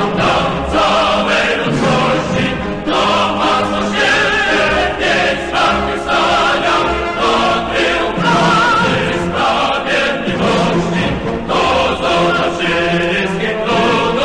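A choir singing long held notes, some with vibrato, as part of a piece of music.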